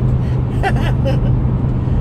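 Steady road and engine drone inside a moving car's cabin, a low hum holding one pitch, with a short laugh partway through.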